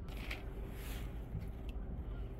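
Steady low rumble of wind on the microphone, with a couple of faint knocks.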